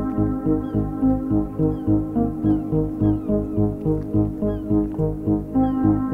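Background music: sustained chords over a steady pulse about two beats a second, with short falling high notes recurring through it.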